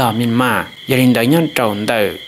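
Speech only: a man speaking steadily without pause, with a faint steady high whine beneath the voice.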